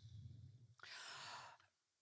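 A faint breath drawn into a close microphone, a soft rush of air lasting about a second in the middle of a near-silent pause.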